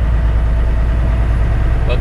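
Semi truck's diesel engine and tyre noise heard inside the cab while driving, a steady low rumble.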